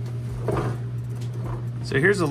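A steady low hum throughout, with the start of a man's voice at the very end.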